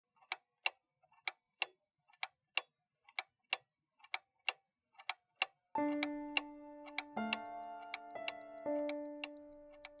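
Pendulum clock ticking in a tick-tock rhythm, two ticks close together about once a second. A little past halfway, music of held notes comes in over the ticking.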